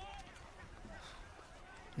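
Faint outdoor field ambience with faint, short, distant calls rising and falling in pitch over a low steady rumble.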